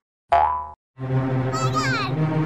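A short cartoon sound effect whose pitch falls. About a second in, background music starts, with a wobbling, falling effect near the end.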